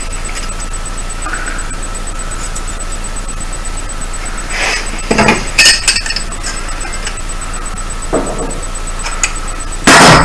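Pliers and stiff metal wire clinking and scraping as the wire is wound into a tight coil to form small fixing rings, with a few clusters of clinks about halfway through and a lighter one near the end.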